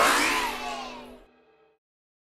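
Closing background music with a whooshing transition effect of rising sweeping tones laid over it, the whole fading out within about a second and a half.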